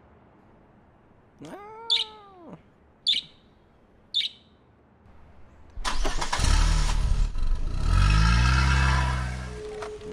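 A small bird gives a short rising-and-falling call and three sharp chirps about a second apart. About six seconds in, a car engine is started with a key, catches, and revs up with a rising pitch before it fades.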